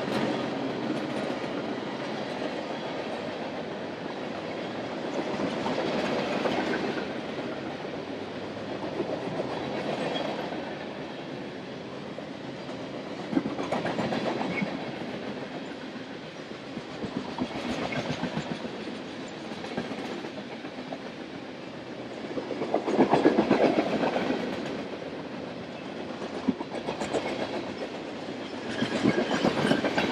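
Freight train of boxcars and refrigerator cars rolling past close by, with steel wheels clicking over the rail joints. The rumble swells and fades about every four seconds.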